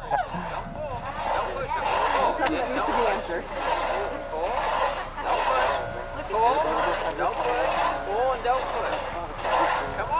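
Two-man crosscut saw rasping through a log, pushed and pulled back and forth, with a stroke about once a second.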